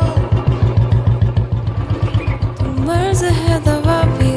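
Motorcycle engine running with a steady, fast thump, about nine beats a second, under background music whose melody rises and falls near the end.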